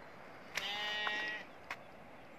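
A single bleat from the herd's sheep and goats, held steady for about a second, followed by a sharp click.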